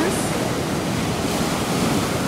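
Ocean surf breaking on a rocky beach: a steady rush of waves washing in.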